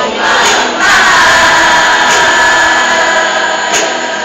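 A large choir singing in unison, holding one long chord from about a second in.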